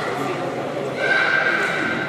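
Sports shoes squeaking on the hall's court floor, one long high squeak starting about a second in, over crowd chatter echoing in a large hall.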